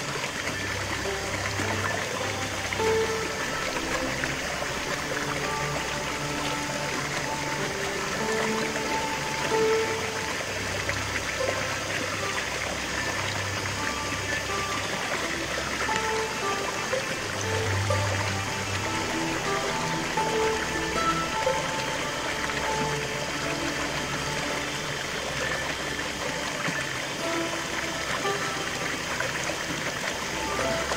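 Slow background music of long held notes laid over the steady rush of a small stream cascading over rocks into a shallow pool.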